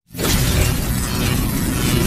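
Cinematic intro sound effect: a loud, dense noisy burst that starts suddenly from silence just after the start, with a deep rumble underneath, holding steady.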